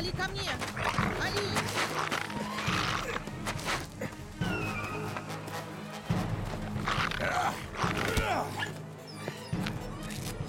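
Film soundtrack: music with a steady low bed, under voices or cries and many sharp hits.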